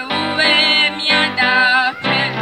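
A girl singing solo into a handheld microphone, with wavering held notes sung in short phrases, over a steady musical backing.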